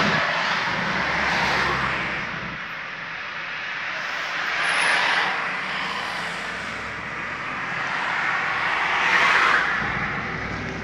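Road and wind noise inside a moving car: a steady rushing hiss that swells and fades three times.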